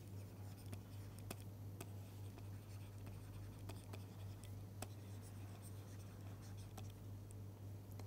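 Faint taps and scratches of a stylus on a tablet screen during handwriting, irregularly spaced, over a steady low hum.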